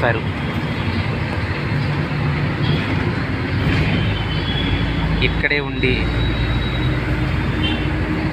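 Steady engine and road rumble of a moving vehicle, heard from inside the cabin, with a short burst of a voice about five and a half seconds in.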